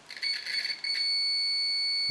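DT-9205A digital multimeter's continuity buzzer beeping with its test probes touched together, the sign of a closed, unbroken circuit. The high-pitched beep stutters and crackles at first as the probe tips make and break contact. From about a second in it holds a steady tone.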